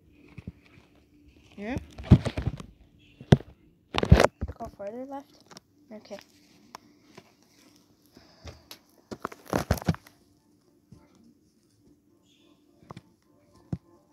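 Handling noise from plush toys and cloth being moved over carpet: scattered thumps and rustling, loudest around two, four and ten seconds in. Two brief wordless vocal sounds with gliding pitch come between them.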